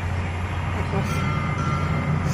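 Steady low rumble of road traffic, with a vehicle engine running nearby.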